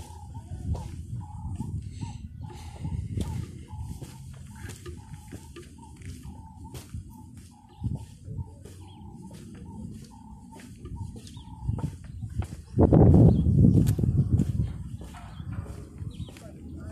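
Footsteps on stone and paving, with a short high note repeating about twice a second in the background until a little past the middle. Near the end comes a loud low rumble lasting about two seconds.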